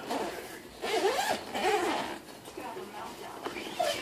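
An indistinct speaking voice, with no clear words, for a couple of seconds, mixed with some rustling noise.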